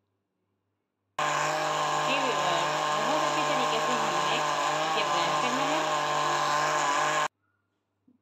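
Anex countertop blender running at a steady speed, puréeing mango chunks with cream into a shake. It starts suddenly about a second in and cuts off suddenly near the end, with a slight waver in its pitch.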